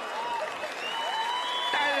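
Live audience applauding after a punchline, with a few voices rising over the clapping.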